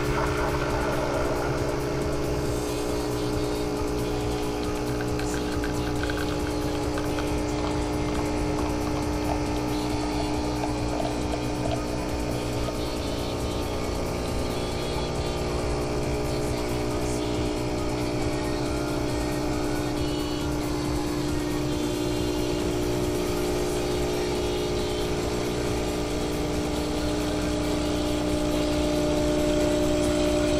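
Nescafé Barista instant-coffee machine running its brew cycle: a steady motor-and-pump hum with a few constant tones that holds unchanged while it dispenses coffee into the mug.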